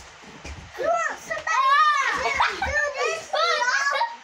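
Children's high-pitched yelling and shrieks during rough play-fighting, loudest from about a second and a half in, with a few dull thumps in the first second.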